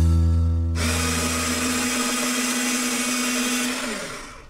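Electric paper shredder running as a sheet of paper feeds into its slot, starting about a second in with a steady hum and stopping near the end with a brief wind-down, while the tail of background music fades.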